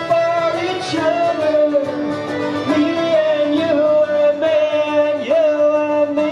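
A traditional folk band playing an instrumental passage between sung verses: fiddle carrying the melody in held notes with small slides, over banjo.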